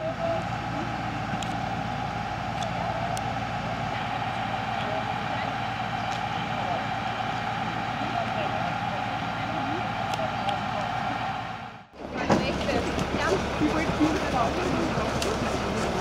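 A fire engine running steadily with an even engine drone and indistinct voices. About twelve seconds in the sound drops out briefly and gives way to a busier mix of nearby voices and movement.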